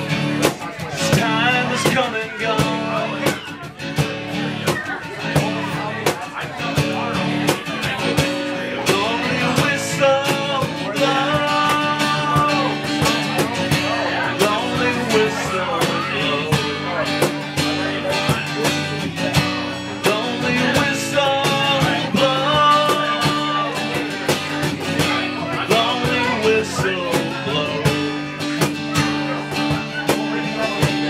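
Live acoustic guitar and cajón playing an instrumental passage, the cajón keeping a steady beat of hand strikes under the guitar.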